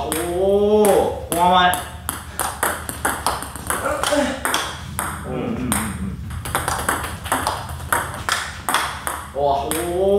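Table tennis rally: the plastic ball clicks off the bats and the table in a quick, even rhythm. One of the bats is faced with short-pips rubber.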